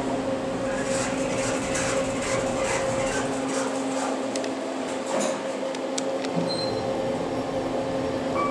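Kone EcoDisc elevator car travelling down: steady ride noise inside the cab, a constant hum over an even rush, with a few light clicks.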